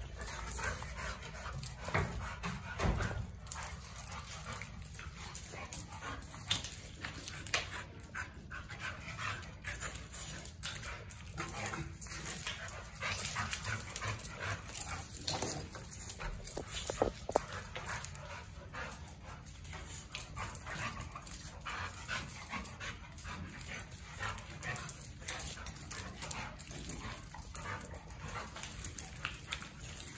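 Two young pit-bull-type dogs play-wrestling on a concrete floor: irregular scuffling and knocking of paws and bodies, with short dog vocal sounds now and then.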